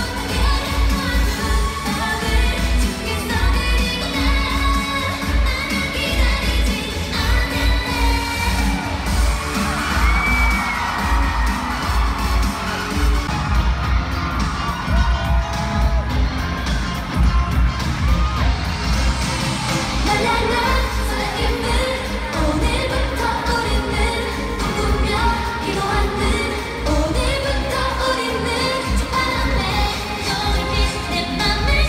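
Live K-pop girl-group performance played through an arena PA: women singing over a pop backing track with a heavy, steady bass beat.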